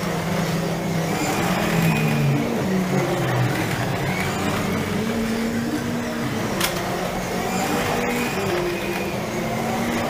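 Several 1/24-scale slot cars lapping the track, their small electric motors whining and gliding up and down in pitch as they speed up and slow down. A single sharp click about six and a half seconds in.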